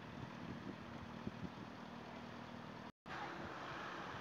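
Faint town-street ambience with a vehicle engine's steady hum in the traffic, cut off by a brief dropout about three seconds in, after which a plainer street hiss goes on.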